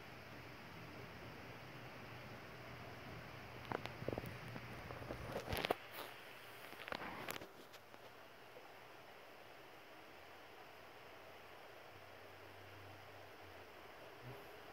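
Faint steady room hum, with a few short rustles of bedding and phone handling between about four and seven and a half seconds in.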